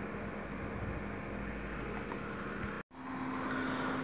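Steady low hiss and faint electrical hum of the recording's background between narration, with a brief complete dropout about three seconds in where the audio is cut; afterwards a slightly different steady hum continues.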